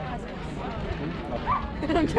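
Voices of players and spectators calling out and chattering across a softball field, with a louder high call about one and a half seconds in and another near the end.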